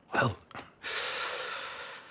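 A man's long, heavy breath out, starting about a second in and slowly fading away.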